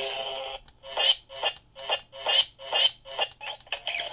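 A Galaxy's Edge lightsaber hilt's speaker plays its steady hum, which cuts off about half a second in. Then comes a quick run of about eight short electronic sound effects, roughly two a second, as the power switch is flipped on and off over and over to reset the custom blade controller.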